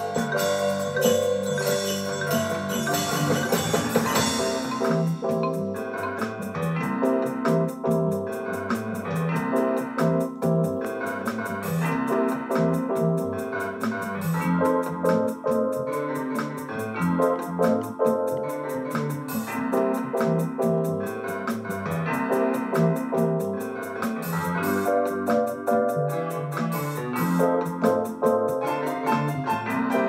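Casio WK-7600 keyboard playing a multitrack song arrangement: acoustic piano rhythm riffs over organ-like and mallet-like keyboard voices. The first few seconds are brighter and hissier, and after that a steady ticking beat runs under the chords.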